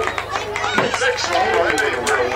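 Several people chattering at once near the microphone, their words indistinct, over a steady low hum.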